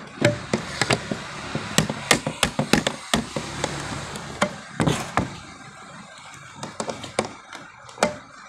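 Irregular knocks and taps, some sharp and close together, over a steady hiss that fades about halfway through.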